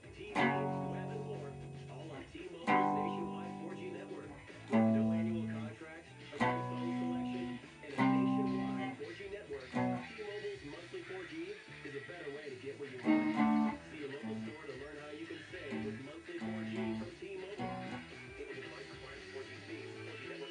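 Solid-body electric guitar: a chord struck and left to ring about every one and a half to two seconds, five times, then quieter, shorter picked notes and chords through the second half.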